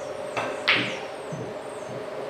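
A sinuca safety shot: a light tap of the cue tip on the cue ball, then a sharp click as the cue ball strikes the object ball, followed by two dull thumps of the balls hitting the cushions.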